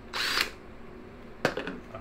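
Cordless power driver spinning a socket on the flywheel nut of a Honda Z50R engine, one short burst of about half a second at the start, taking the old flywheel off. A single sharp click follows about a second and a half in.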